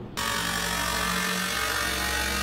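Loud, harsh electronic noise from a live DJ and projection-mapping show's sound system, over a deep, steady bass drone. It cuts in suddenly just after the start.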